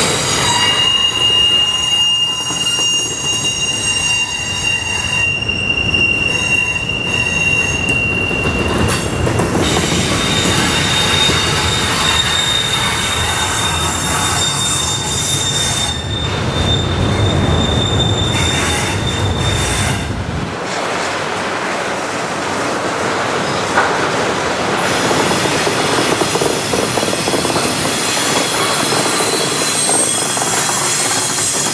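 Double-stack intermodal freight train rolling past, its steel wheels rumbling on the rails with a high, steady wheel squeal. The squeal jumps to a higher pitch about ten seconds in and fades out about twenty seconds in, leaving the rumble of the passing cars.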